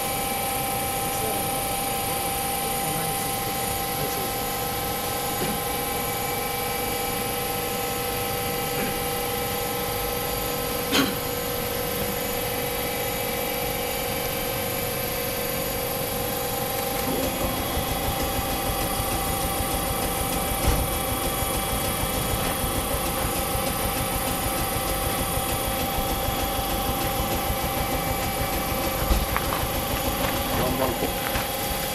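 Stationary Choshi Electric Railway DeHa 801 electric railcar with its onboard equipment running: a steady electrical hum carrying several fixed whining tones. About 17 s in the sound shifts as one whine drops out and a higher, rippling one comes in. A sharp click comes about 11 s in and a knock near 21 s.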